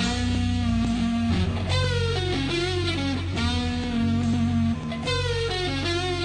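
A rock band plays an instrumental passage live. Electric guitar plays a melodic lead with bending, gliding notes over bass and a held, sustained note. There is no singing.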